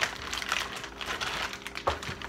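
Plastic food bag crinkling and rustling steadily as it is handled, with one dull knock near the end.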